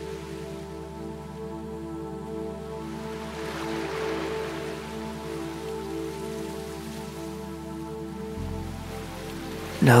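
Ambient new-age music of sustained synth tones with a slow, even pulsing, over a low drone that moves to a new note near the end. A soft rushing wash swells and fades about four seconds in.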